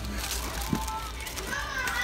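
Indistinct background voices over a steady low hum of shop ambience.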